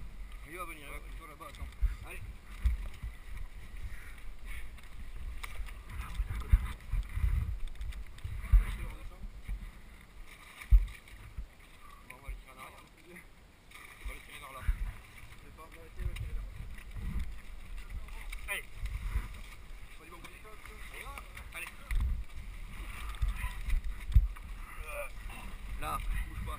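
Indistinct talking from several people nearby, over repeated low thumps and rumble of wind and movement on a helmet-mounted camera's microphone.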